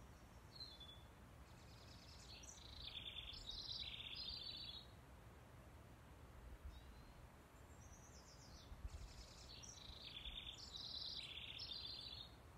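A songbird singing faintly: two rapid phrases of many high notes, each about four seconds long, a few seconds apart, over a low steady background rumble.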